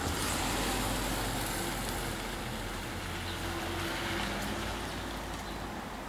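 A motor vehicle driving past close by on the street: a steady rush of engine and tyre noise that starts suddenly and slowly fades.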